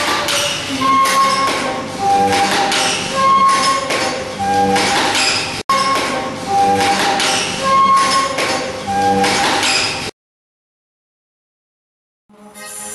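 Music played on self-built mechanical instruments: clinking, tapping strikes on objects mixed with short pitched notes, in a phrase that repeats. It cuts off to silence about ten seconds in.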